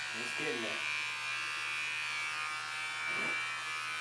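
Electric hair clippers running with a steady buzz while trimming the ends of straight hair to even the line.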